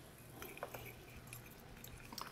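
Faint scattered clicks of a fork against a glass bowl as it stirs a dry flour mixture.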